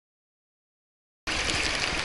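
Dead silence for about the first second, then splashing water in a swimming pool cuts in abruptly from a child swimming backstroke.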